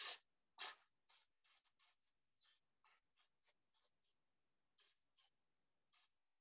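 Hand-pumped fine-mist spray bottle squirting water onto wet watercolour paper in about fifteen short hisses. The first two are the loudest and the rest are fainter and quicker. The mist is breaking up the edge of a wet wash.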